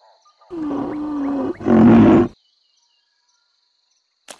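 A white rhinoceros's deep, rough call in two parts, the second shorter and louder, over a faint, steady cricket trill.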